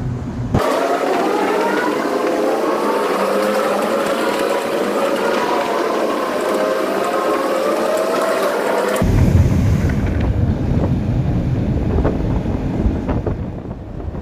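Several motorcycle engines running at speed inside a road tunnel, their notes wavering up and down together. About nine seconds in this gives way to a low rumble of wind and road noise.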